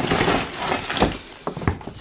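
A gift bag of snacks tipped out onto a bed: the bag and wrappers rustle, then boxed chocolate bars, tins and packets tumble onto the duvet with a soft thud about a second in and a few light knocks after.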